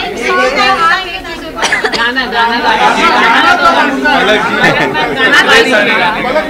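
Several people talking at once: loud, overlapping chatter with no single voice standing out.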